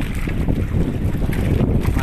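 Steady low rumble of wind buffeting the microphone aboard a small outrigger fishing boat at sea.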